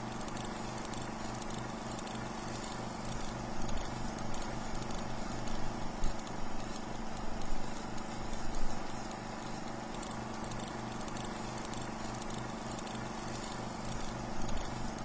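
Film projector running: a steady mechanical hum with a fast, even clatter from the film advance, and a few louder clacks in the middle.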